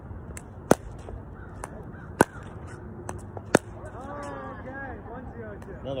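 Pickleball paddle striking the plastic ball in a solo rebound-wall drill: three loud, sharp hits about a second and a half apart, with fainter ball bounces between them.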